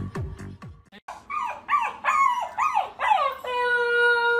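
Husky puppy howling: a string of short rising-and-falling yelps about twice a second, then one long, steady howl from about three and a half seconds in. Electronic music with falling bass sweeps plays in the first second.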